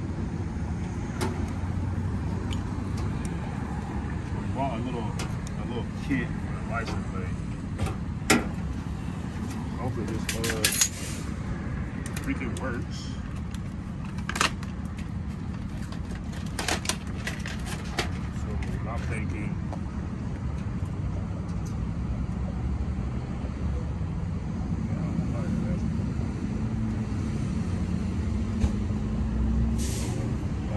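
Scattered sharp metallic clicks and clinks of license-plate screws, washers and a screwdriver being handled against a plate and bumper. They come over a steady low engine hum.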